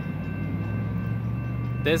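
Freight train's covered hopper cars rolling away on the track: a steady low rumble with faint steady high tones over it. A man's voice starts just before the end.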